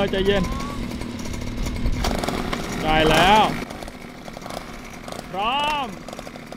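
Small mini-bike engines, a child's mini dirt bike and a pocket bike, running at idle with a steady buzzing hum and a fast even firing pulse.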